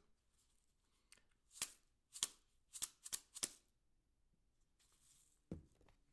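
Plastic spice jar shaken as a home-made shaker: the dried spices rattle inside in a handful of short, crisp shakes. Near the end there is one low thud.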